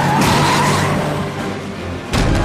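A car skidding with a high squeal, over a film score. The mix eases off toward the end.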